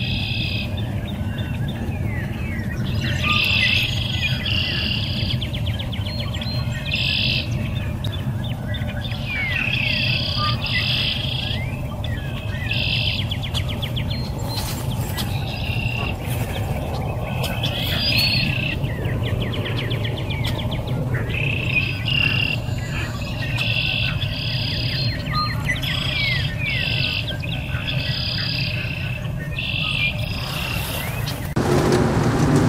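Small songbirds chirping and trilling, a high-pitched phrase of about a second repeated every few seconds with quick short chirps between, over a steady low rumble.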